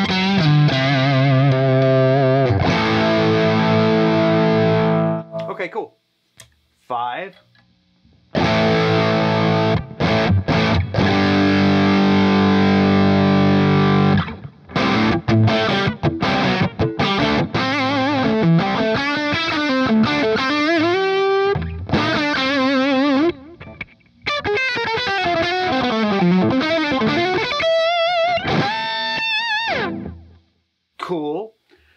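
Electric guitar through a Danelectro The Breakdown boost/overdrive pedal set for heavy gain and a lot of low end. Distorted chords ring out twice, then single-note lead lines follow with string bends and vibrato.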